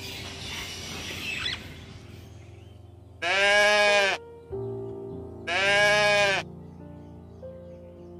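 Goat bleating twice: two loud, drawn-out calls, each just under a second long, about a second and a half apart, over background music.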